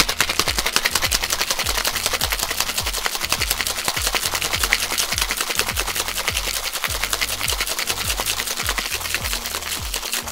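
Ice rattling hard inside a two-piece metal cocktail shaker in a fast, vigorous shake lasting about ten seconds, then stopping. Background music plays underneath.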